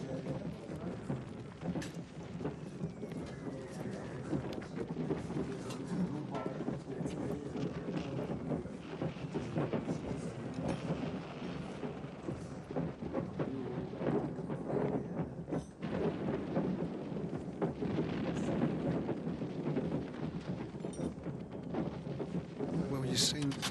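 Continuous low rumble with a dense crackle of small rain-like knocks.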